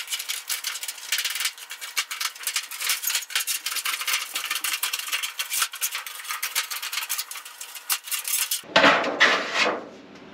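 Hand tin snips cutting through a sheet of 5V metal roofing: a fast, continuous run of sharp metallic clicks and crunches. Near the end come two or three louder, rougher scraping rushes as the cut metal sheet is handled.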